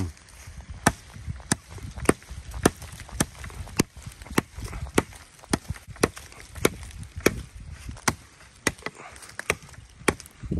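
Tops Tom Brown Tracker knife, a heavy quarter-inch-thick 1095 steel blade swung from the end of its handle, chopping into a small standing tree. The chops come in a steady rhythm, a little under two a second, about sixteen in all.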